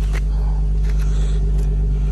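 Infiniti G37x's 3.7-litre V6 idling steadily, heard from the rear of the car near the exhaust, with a few faint ticks over the low hum.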